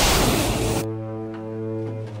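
Background music: a loud rush of noise that cuts off a little under a second in, then low bowed strings holding sustained notes over a deep drone.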